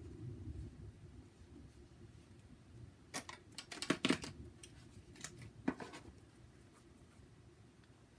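Medicine cards being shuffled and handled by hand: a dull rustle at first, then a quick run of crisp card snaps and flicks about three to four seconds in and two more shortly before six seconds.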